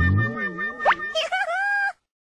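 Comic outro music and sound effects: a wobbling, cartoon-like pitched sound, a quick rising boing-like glide about a second in, then a wavering held tone that cuts off suddenly just before the end.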